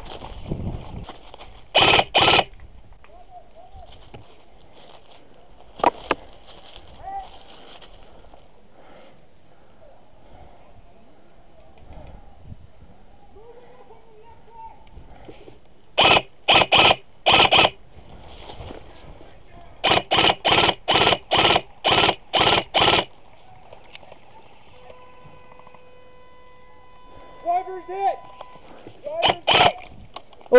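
Systema PTW airsoft rifle firing close to the microphone in strings of quick single shots. Two shots come about two seconds in, then one, then four in quick succession, then a run of about eight more, and a few near the end.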